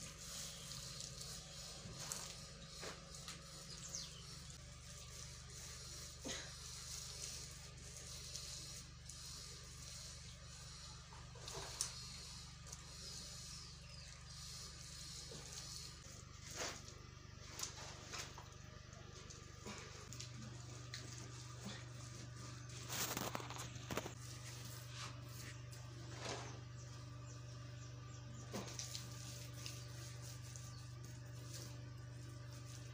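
Soft, scattered wet slaps and scrapes of bare hands smearing and smoothing mud plaster on a clay cooking stove, over a steady low hum.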